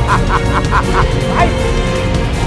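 A man laughing loudly in a quick, even run of high 'ha-ha-ha' pulses, about six a second, that breaks off about a second in, over background music.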